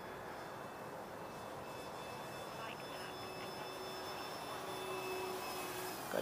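Distant electric RC model plane, a Durafly T-28, flying at full throttle: a steady hum of its motor and propeller that grows slightly louder, with a faint steady tone joining in about halfway through.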